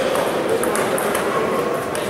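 Table tennis ball clicking off the bats and table in a rally, several sharp clicks, over the steady din of a busy sports hall.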